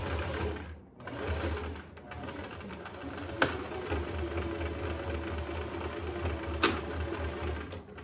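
Singer domestic sewing machine stitching through layers of coat fabric: it runs, stops briefly about a second in, then runs steadily again, part of the time sewing in reverse with the reverse lever held. Two sharp clicks sound over the motor.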